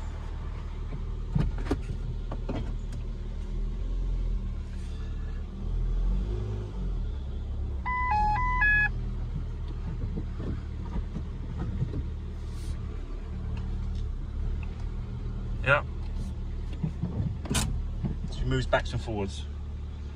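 Ford Fiesta engine running at low revs, heard from inside the cabin as the car is driven slowly forward and back in gear, its note rising gently a few times, with scattered clicks. A short run of electronic beeps comes about eight seconds in.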